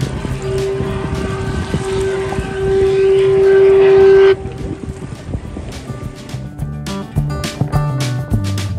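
Paddle steamer Waverley's whistle sounding one long blast of about four seconds: a single steady note that gets louder toward the end and cuts off suddenly, over wind and water noise.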